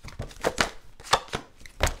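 Tarot cards being handled and a card laid down on the table: an irregular series of sharp taps and snaps of card stock.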